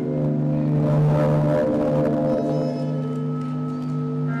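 Electric guitar held up and moved in the air, making a steady drone of sustained feedback tones over a strong low note. Higher ringing tones join in a little after halfway through.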